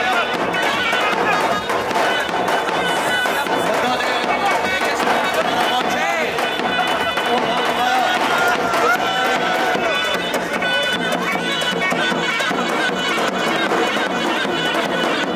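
Kurdish folk dance music: a davul bass drum beating under a loud, wavering reed-pipe melody of the zurna kind, with voices in the crowd.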